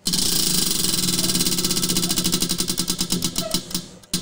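Prize wheel spinning: a rapid run of ticks over a steady low hum, the ticks slowing down toward the end as the wheel comes to rest.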